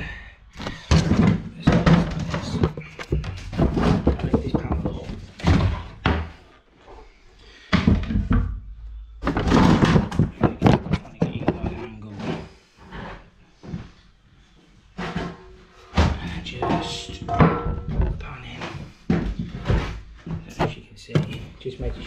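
Background music over repeated thunks and knocks as a ceramic toilet pan and its plastic flush pipe and flexible pan connector are handled and pushed into place.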